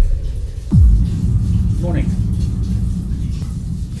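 Intro music: deep booming hits that drop in pitch, the last about a second in, followed by a low rumble that slowly fades.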